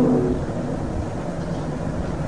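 A man's held, chanted syllable fades out about half a second in, followed by a steady low rumble and hiss of background noise.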